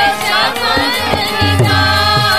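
Sikh Gurbani kirtan: voices singing a devotional hymn over a sustained harmonium drone, with tabla strokes whose bass drum slides in pitch.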